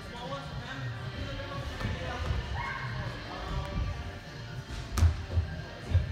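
Busy indoor parkour gym: scattered voices talking and calling over background music, with one sharp thud about five seconds in.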